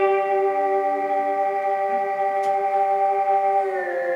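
Electric guitar holding a sustained chord, the notes ringing on steadily and then sagging slightly lower in pitch near the end.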